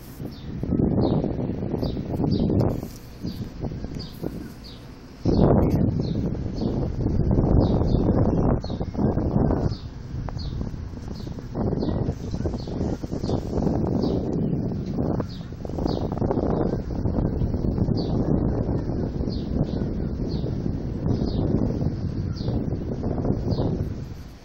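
A small bird chirping over and over, short high chirps about twice a second, under loud irregular rubbing and handling noise on the phone's microphone.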